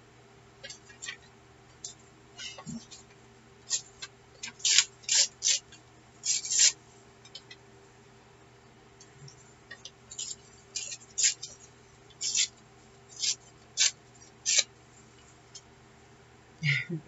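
Sheets of torn painted paper being handled and shuffled: short, irregular crackling rustles, some in quick clusters, over a faint steady hum.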